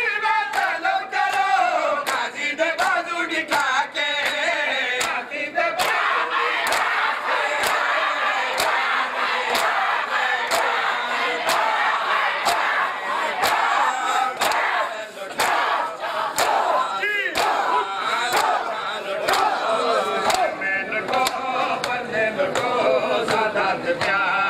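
Matam: a crowd of mourners striking their bare chests with their hands in a steady rhythm, about two slaps a second, under crowd chanting and shouting. For the first six seconds or so a sung noha is heard over the strikes; after that the massed crowd voices take over.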